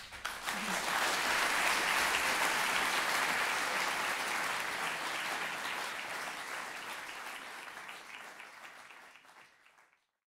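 Audience applauding in a concert hall. The applause breaks out suddenly, then fades away over the last few seconds.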